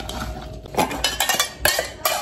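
Stainless steel pot and metal spoon clanking and clinking: quieter at first, then about five sharp clinks in quick succession from a little under a second in, as the pot is picked up and the spoon rattles against it.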